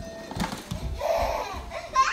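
A light knock about half a second in, then soft, breathy laughter.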